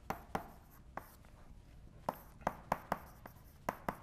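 Chalk writing on a blackboard: a string of short, irregular taps and light scrapes as words are written.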